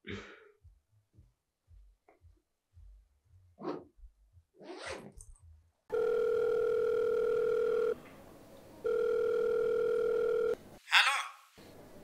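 Telephone ringback tone heard as an outgoing call rings: two long steady beeps of about two seconds each, a second apart, in the second half. Before them there are only a few faint short sounds.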